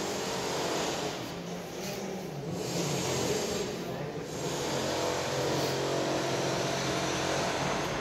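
Steady machinery noise with a low hum, swelling and easing slightly in level, with no distinct knocks or clicks.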